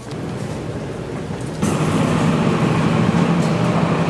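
Quieter background noise, then about 1.6 s in a loud steady rushing of air with a low hum starts suddenly and holds. It fits the blower fan of an air curtain mounted over the store's entrance doors.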